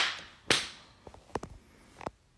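Sharp hand slaps, two loud ones about half a second apart, followed by a few fainter taps.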